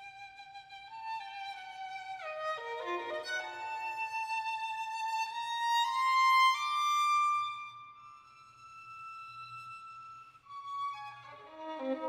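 Solo violin playing slow, sustained bowed notes with sliding pitch: a falling line, then a rise to a loud held high note about halfway through, a quiet stretch, and a strong chord near the end.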